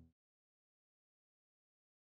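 Silence: the last trace of a song's fade-out dies away in the first instant, then complete digital silence.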